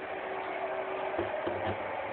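Cloth rubbing against a handheld phone's microphone, with a few soft handling knocks just past the middle.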